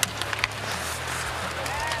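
Ice hockey arena ambience: a steady crowd murmur with a few sharp clacks of stick and puck on the ice in the first half second.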